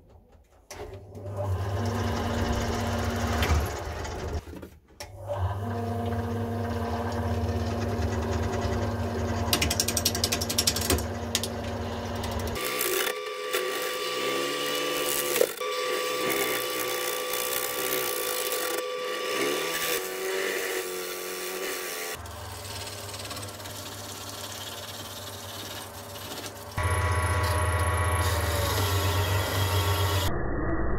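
Clarke wood lathe running with a gouge cutting into a spinning green log, roughing it round, with a steady motor hum under the scraping of the cut. The sound changes abruptly several times.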